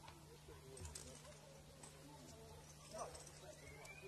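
Near silence: a steady low hum under faint, indistinct distant voices.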